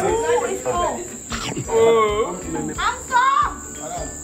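Voices of a small party crowd around the cake table, with a woman exclaiming over a big slice and others talking. A steady, high-pitched, insect-like drone runs underneath, and background music plays.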